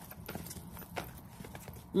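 Tarot cards being shuffled by hand: a faint, quick patter of small card clicks, with one sharper click about halfway through.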